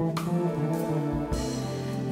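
Live jazz-fusion band playing a short instrumental stretch: steady held chords over an electric bass note and drums, with a sharp cymbal-like hit just after the start.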